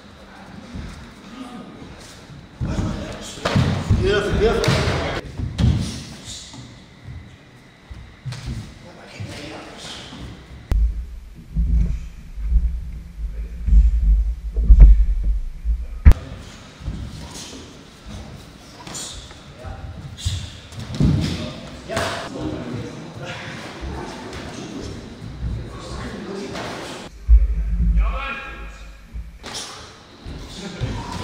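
Full-contact sparring: gloved punches and kicks landing with irregular thuds and slaps, echoing in a large hall, with a low rumble around the middle and near the end.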